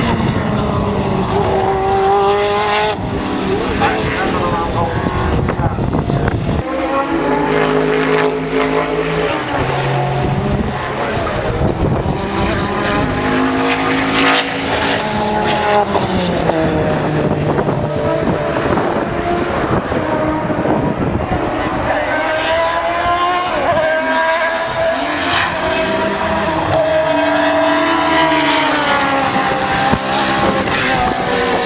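Group C sports-prototype race cars, among them a Porsche 962, running past at racing speed one after another. The engine notes rise and fall in pitch over and over through the gear changes.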